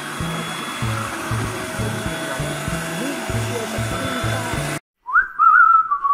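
Electric food processor running steadily as it purées mushroom pâté, over background music with a low beat. Everything cuts off suddenly about five seconds in, and a short whistled phrase rises and holds.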